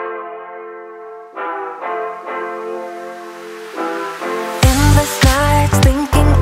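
Background music: held brass-like chords, then a full beat with heavy bass and drums coming in about two-thirds of the way through.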